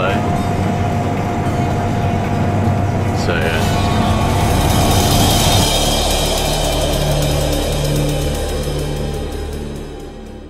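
Combine harvester running steadily while cutting wheat, heard from the cab. About halfway through it gives way to music with repeating low notes, which fades out near the end.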